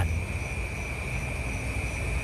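Steady background of night insects, a continuous high drone held on one pitch, over a low rumble.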